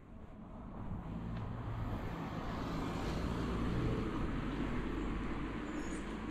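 A car passing close by: engine hum and tyre noise grow louder over the first two or three seconds, then hold steady.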